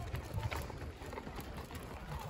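Faint footsteps on a dirt path over a low, uneven rumble.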